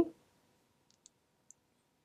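Near silence: quiet room tone as a spoken count dies away, with two faint ticks about a second and a second and a half in.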